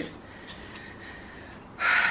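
Quiet room tone, then near the end a short, sharp intake of breath.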